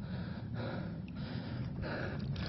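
A man breathing, soft noisy breaths over a low steady rumble, between words.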